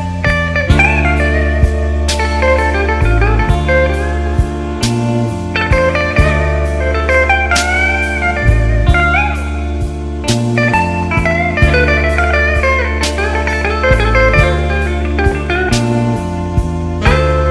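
A slow electric blues band playing an instrumental break. A lead line slides and bends between notes over a bass line and a steady drum beat.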